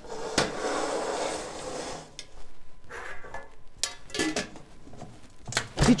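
Metal cake tins and their lids being handled: a rustling scrape for about the first two seconds, then scattered clinks and knocks.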